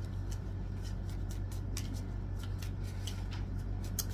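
Oracle cards being shuffled and handled in the hands: a scattering of short, irregular flicks and card-edge clicks over a steady low hum.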